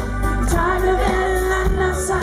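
Live pop music played through a PA: a male singer holding sung notes over acoustic guitar and band accompaniment with a steady beat.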